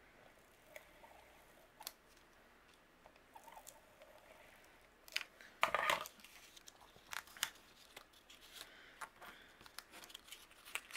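Quiet handling of a cardstock gift card holder while adhesive goes on: soft rustles and scattered light clicks, with a brief louder scrape a little past halfway and a cluster of clicks after it.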